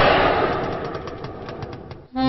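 A firework bursting: a sudden loud blast that dies away over about two seconds into scattered crackles.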